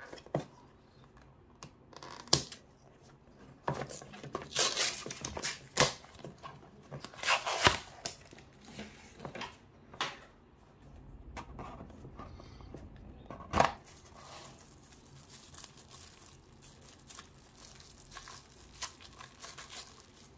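Cardboard and paper packaging being handled by hand while a small earbud box is unboxed: rustling, crinkling and tearing that is heaviest a few seconds in, with sharp taps and clicks of the box at several points.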